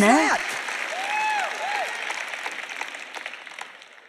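Large arena audience applauding, the clapping fading away steadily over a few seconds.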